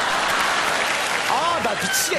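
Studio audience applauding after a punchline, fading as a man's voice comes in about a second and a half in.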